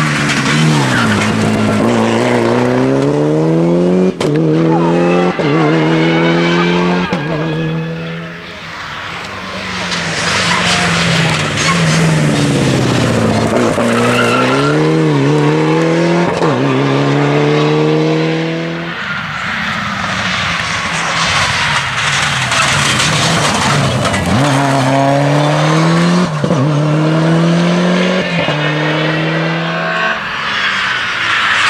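Rally cars accelerating hard through the gears. A Mitsubishi Lancer Evolution's turbocharged four-cylinder rises in pitch and drops back at each upshift, about once a second, in two long runs. In the last third a second rally car, a BMW 3 Series, accelerates through its gears the same way.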